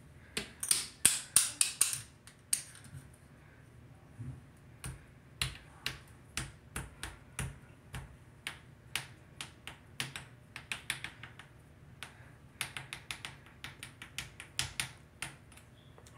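Fingers tapping and handling the phone close to its microphone. Irregular sharp clicks come in quick runs, loudest about a second in and clustered again near the end.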